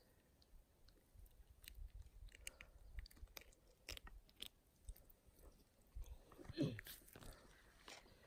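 Very quiet handling noise: scattered small clicks and rubbing as a hand holds a caught bluegill close up against the phone.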